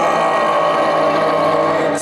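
Violins and flute holding one steady, sustained chord.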